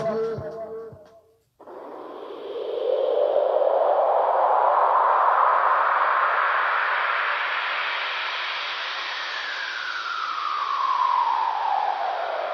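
The end of a rap track fades out, and after a brief break a synthesized whooshing noise sweep comes in, rising in pitch over a few seconds and then slowly falling: an electronic filter-sweep transition between songs.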